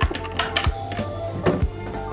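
Saratov household refrigerator plugged in: a click as the plug goes into the wall socket, then the compressor starts and rattles as it runs, the sign that the fridge works. Background music plays alongside.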